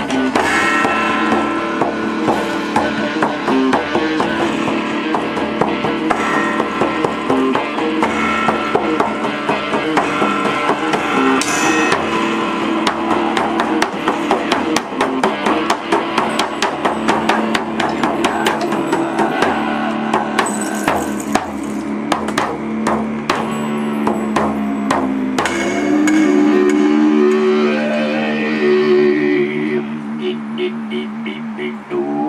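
Live shamanic folk-rock band playing an instrumental passage: electric guitar and accordion over steady hand drumming on a djembe and a large frame drum. The drumming thins out near the end while the held chords carry on.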